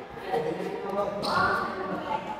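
Badminton rackets hitting a shuttlecock during a rally in a large hall, with players' voices talking in the background.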